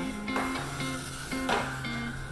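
Background music: held notes with a couple of fresh note attacks, in a guitar-led track.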